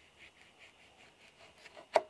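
Small knife sawing through a grapefruit's peel in short, soft strokes, about four a second, with one sharp click near the end.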